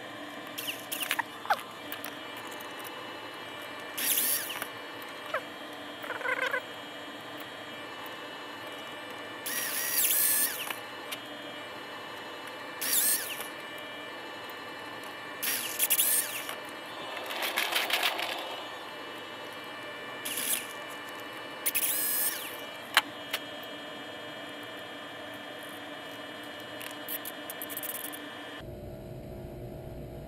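Handheld electric drill run in short bursts of about a second each, drilling holes in 3D-printed plastic quadcopter parts held in a small vice. Each burst spins up with a rising whine, with a few handling clicks between bursts.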